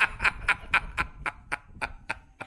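Rapid, even clicking, about four clicks a second, growing a little fainter toward the end.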